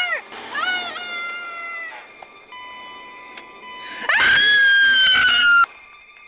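A person screaming in a high voice: a few short screams that rise and fall in the first second, then one long, loud scream, falling slightly in pitch, that cuts off suddenly near the end.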